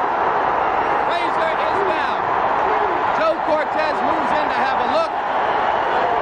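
Arena crowd roaring steadily as a heavyweight boxer is knocked down, with men's voices yelling over the roar.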